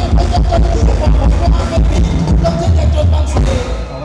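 Amplified live band playing Thai ramwong dance music, with a heavy bass line and a steady drum beat. The music breaks off near the end.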